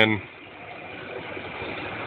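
Steady mechanical running noise from equipment, growing a little louder toward the end.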